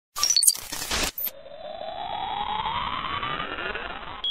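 Electronic intro sound effect: about a second of crackling glitch bursts with short whistling blips, then a smooth synth sweep rising steadily in pitch.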